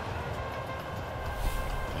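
Steady ground ambience from the cricket broadcast's field microphones: an even, low rumbling noise with a faint steady hum, and no distinct events.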